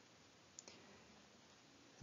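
Near silence, with a faint short click a little over half a second in.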